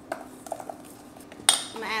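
A metal utensil clinking and scraping against a stainless steel mixing bowl while stirring cornbread batter: a few light clicks, then one sharper, louder clink about one and a half seconds in.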